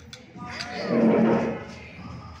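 A group of children shouting together in one loud, drawn-out cheer as they toast with their cups, loudest about a second in.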